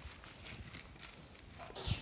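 Thin Bible pages being leafed through by hand: a run of soft, crisp flicks, with one louder page rustle near the end.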